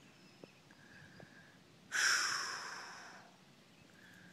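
A man's sharp breathy exhale, a sigh, about halfway through, fading out over about a second.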